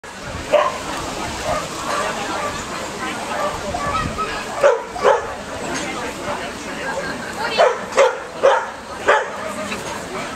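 A dog barking in short, sharp barks, about seven in all: one near the start, two just before the middle, and four in quick succession in the last few seconds.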